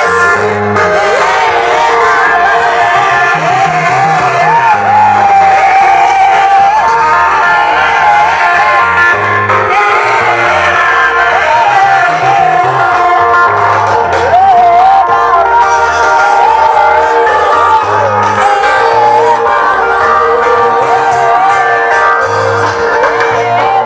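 A congregation singing a gospel song together, many voices carrying one wavering melody, over an amplified band with a steadily repeating bass line; loud and unbroken throughout.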